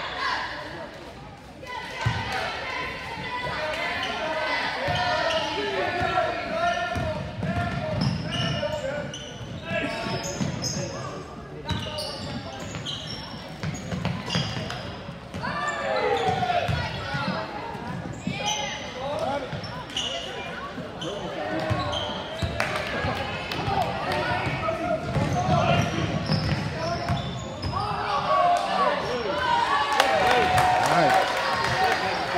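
Basketball bouncing on a hardwood gym floor during play, with voices of spectators and players calling out and talking throughout.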